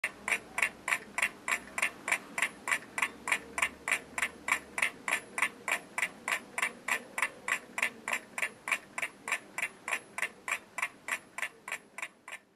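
Steady, even ticking, about three ticks a second, growing slightly fainter toward the end.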